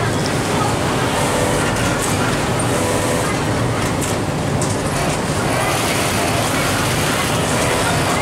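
Steady din of a garment sewing room: industrial sewing machines running continuously, with voices faintly behind.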